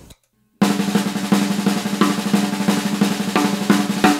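Snare drum with a coated head played with sticks in a fast, even paradiddle at one volume, starting about half a second in. It is the one-speed, one-dynamic example of a paradiddle, ringing out briefly at the end.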